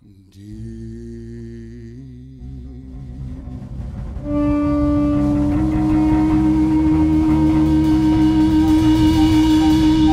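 Live blues band coming back in after a brief silence: bass and drums start softly, then about four seconds in the full band jumps louder under a long held lead note that bends up slightly and sustains.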